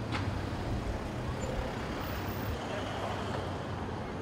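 A convoy of SUVs driving slowly past: a steady low rumble of engines and tyres.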